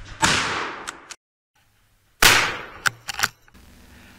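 Two gunshots from a hunting gun fired at a deer, about two seconds apart, each with a long echoing tail through the woods, followed by a few quick short clicks.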